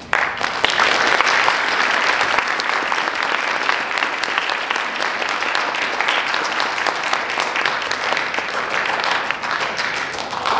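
Audience applause breaks out suddenly as the orchestra's last notes die away: a dense, steady mass of many hands clapping.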